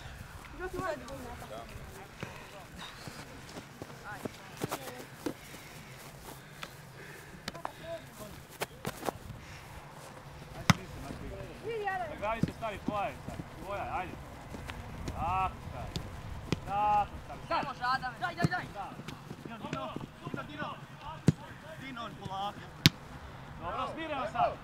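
Shouts and calls from players on an open football pitch, mostly in the second half, with a few sharp thuds of the ball being kicked.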